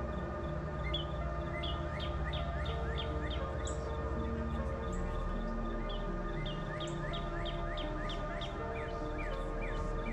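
Background music of long held notes, with short high bird-like chirps repeating two or three times a second throughout.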